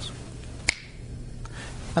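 A single sharp finger snap a little under a second in, against quiet room tone with a low hum.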